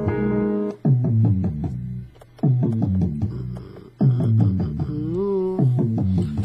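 A short melodic loop of plucked-sounding notes, pitched up a little, playing back from a Maschine Studio and restarting about every one and a half seconds, with a note bending up and down near the end.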